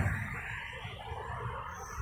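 Faint, steady outdoor background noise with a low rumble and no distinct events.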